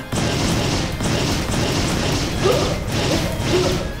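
Cartoon battle sound effects for a fiery energy blast: a continuous dense rush of noise with crashing impacts, music faintly underneath.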